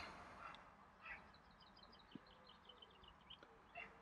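Near silence, with a faint, quick run of high bird chirps starting about a second in and lasting about two seconds.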